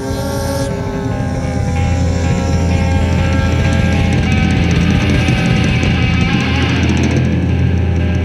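Rock band playing live, with electric guitar, bass and drums, growing louder about two seconds in.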